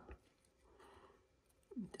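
Near silence: room tone, with only a faint soft sound near the middle.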